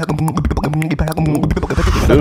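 Two beatboxers performing a tag-team routine: rapid vocal percussion hits in a quick rhythm, with pitched vocal bass and melodic sounds between them.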